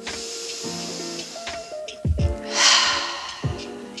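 Soft background music with steady held tones, and a woman's breath: a faint breath in at the start, then a long sighing breath out about two and a half seconds in.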